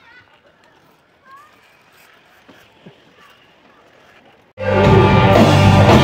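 Faint outdoor background with a few soft chirps, then about four and a half seconds in, loud live rock music cuts in suddenly: a band with drums, electric guitars and bass playing on stage.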